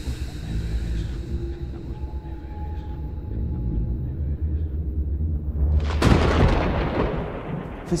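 Deep, steady rumbling drone from the film's sound design. About six seconds in, a loud rushing swell builds up, peaks, and then fades away.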